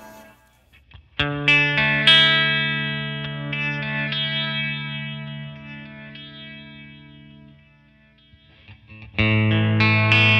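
Fender electric guitar played through a Flamma FS03 delay pedal on its Galaxy modulated-delay setting: a chord is struck about a second in and again shortly after, ringing out and slowly fading with the delay. A new chord is struck near the end.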